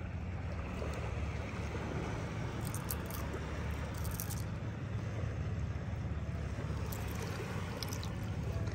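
Sea waves washing steadily over shallow reef water, a deep, even rush, with a few brief faint splashes and trickles of water about three and four seconds in.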